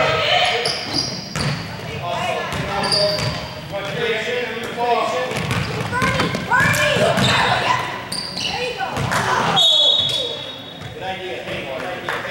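A basketball dribbling on a hardwood gym floor, with overlapping shouts and chatter from players and spectators, all echoing in the large gymnasium. A short whistle blast sounds near the end.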